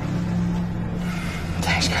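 Car engine running steadily with a low hum. A brief spoken word comes near the end.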